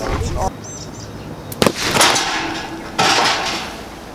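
Low-impact micro explosive charges blasting rock: a sharp crack about one and a half seconds in, followed by two loud noisy bursts that each fade away over about a second.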